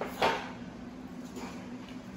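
Sharp clunk of the metal push-up handles against the floor about a quarter second into the push-up, with a fainter knock about a second and a half in, over a steady low hum.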